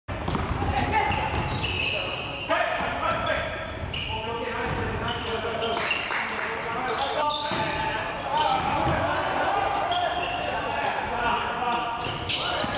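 A basketball being dribbled on a hardwood gym floor, with players' voices calling out, echoing in a large hall.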